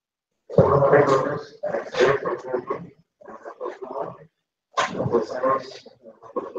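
A person's voice speaking, in three stretches with short pauses between them.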